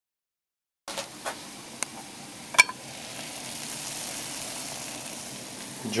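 Water heating toward the boil in a German aluminium mess tin on a Swedish army Trangia stove over a Trangia military alcohol burner: a steady sizzling hiss that starts about a second in and builds slightly, with a few sharp ticks in its first two seconds.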